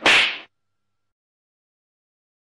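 A single short swish sound effect, starting sharply and dying away within about half a second.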